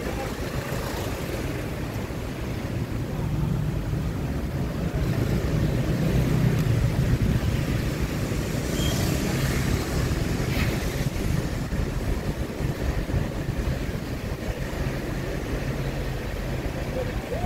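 Steady low rumble of a car driving slowly along a street, engine and tyre noise, with passing motorbikes; it grows louder for a few seconds around the middle.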